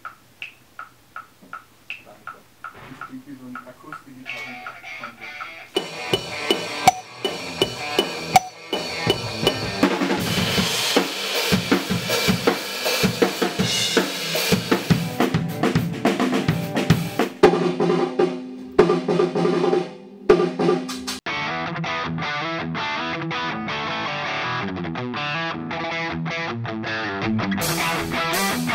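Instrumental rock music led by a drum kit: a steady ticking about twice a second at first, then the drums come in with rolls and fills and the music builds up. It drops out briefly about twenty seconds in and comes back with a duller, muffled sound.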